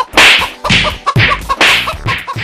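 Cartoon fight sound effects: about four sharp whip-crack and whack hits in quick succession, roughly two a second, over a scuffle.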